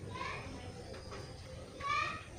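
Two short, high, voice-like calls in the background, one just after the start and a louder one near the end, over a steady low hum.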